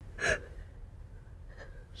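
A person's single sharp gasp about a quarter second in, followed by low, quiet background hiss.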